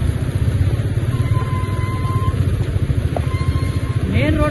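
Rainstorm sound with wind buffeting the microphone in a loud, choppy low rumble. A faint, thin steady tone sounds a little over a second in and again near the end.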